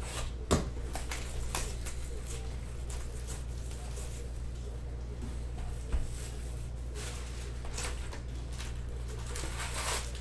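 Plastic shrink wrap being cut and peeled off a cardboard trading card box, crinkling in short scattered crackles with a sharp knock about half a second in, then the cardboard lid being opened, with denser crackling near the end. A steady low hum runs underneath.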